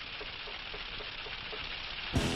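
Weather-service teletype machine running and printing a bulletin: a steady hiss with light, regular ticks about four a second.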